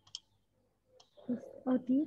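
A single faint click, then a person's voice heard over a video call, speaking briefly in the second half.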